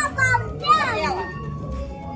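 A young child's high-pitched voice calling out during about the first second, over background music.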